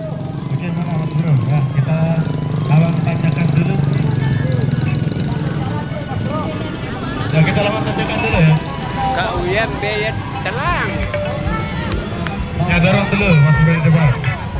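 Many people talking at once, with music playing under the voices and a steady low rumble underneath.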